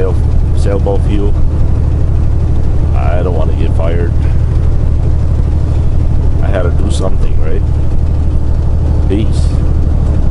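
Semi-truck engine and road noise droning steadily inside the cab at highway speed. A voice comes through over it in a few short stretches.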